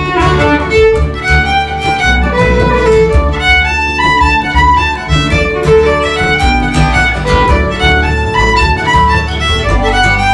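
Fiddle playing a quick tune of many short, quickly changing notes over an accompaniment with a steady bass underneath.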